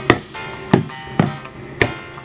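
Four sharp knocks, as bottles of hair product are handled and set down on a hard surface, over background music.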